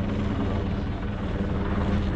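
Police helicopter circling overhead, its rotor and engine giving a steady low drone.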